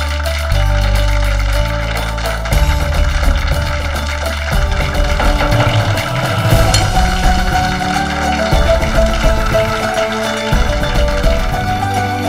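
Dramatic background score: held low bass notes that step to new pitches in the first seconds, then a busier, pulsing passage from about two and a half seconds in under sustained higher tones.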